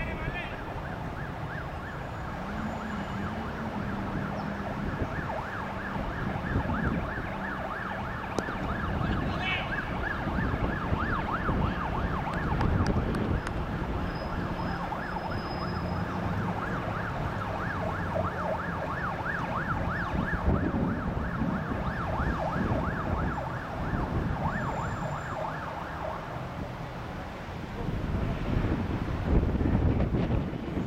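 A siren wailing in a fast, repeating up-and-down warble over a background of wind and rumble, cutting off a few seconds before the end.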